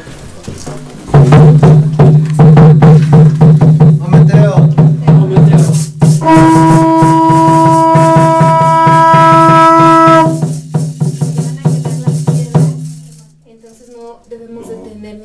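Ceremonial percussion: a frame drum and shaken rattles are struck rapidly and densely. Under them a long, steady low note is held from about a second in until near the end. A higher held note joins for about four seconds in the middle.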